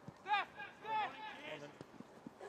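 Two short shouts from players on a football pitch, heard faintly, about a third of a second and a second in, over quiet outdoor background noise.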